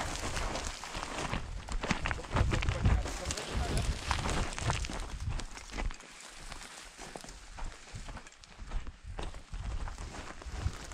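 Footsteps on loose gravel and stones, someone walking downhill in irregular steps.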